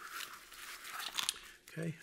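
Plastic packaging crinkling and rustling as small accessories are handled, with a few light clicks, ending in a short spoken "okay".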